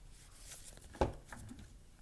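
A deck of tarot cards handled on a wooden tabletop: one knock about a second in, then a few light clicks and rustles of the cards.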